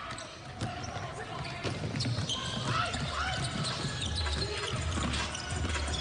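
Basketball game sounds on a hardwood court: a ball being dribbled, short high sneaker squeaks, and players calling out to each other, with no crowd noise over them.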